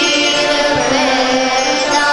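Sung liturgical chant from a Tamil Catholic Mass: a voice holding long notes that waver slightly, over a steady held tone beneath.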